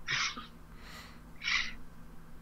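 A person's breathing between sentences: two short, hissy breaths about a second and a half apart.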